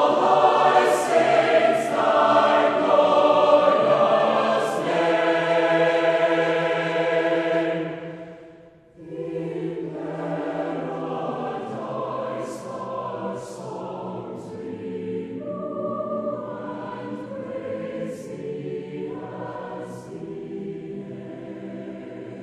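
Large mixed choir of men's and women's voices singing a choral hymn arrangement. A loud phrase ends about eight seconds in, then after a short pause for breath a softer phrase begins.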